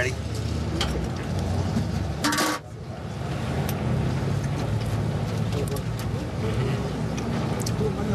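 Steady low rumble of street traffic, with one brief loud noise a little over two seconds in.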